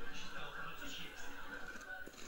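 Sitcom dialogue, a man speaking, played through a television's speaker and picked up in the room, with a steady thin tone behind it.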